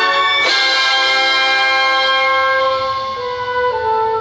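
Orchestral film score holding long sustained chords, with a fresh swell about half a second in. The chords shift and the music grows a little softer near the end.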